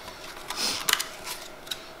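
A few light clicks and crackles of clear plastic packaging on Scentsy wax bars being handled, scattered through the middle of the stretch.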